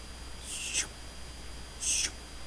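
Two short, breathy hisses, about a second and a quarter apart, the second louder: a man breathing out close to the microphone.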